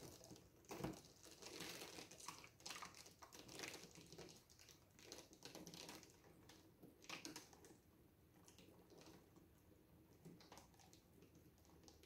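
Near silence, with faint crinkling and rustling from handling a wet acrylic-pour panel being tilted in gloved hands, mostly in the first six or seven seconds.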